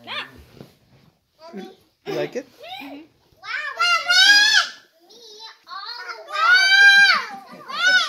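Young children's voices: short bits of chatter, then two long, high-pitched excited squeals about three and a half and six seconds in, each rising and then falling.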